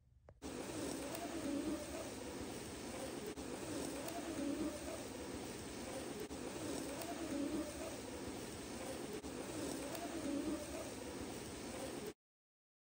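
A bird's low cooing call, repeating about every three seconds over a steady hiss of background ambience.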